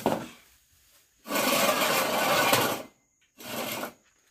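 Metal-framed chairs dragged across a concrete floor: a long scrape of about a second and a half, then a shorter one near the end.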